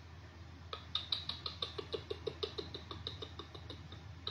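Faint, quick, even run of light clicks, about six a second, from a finger tapping on a smartphone screen. It starts about three-quarters of a second in and stops near the end.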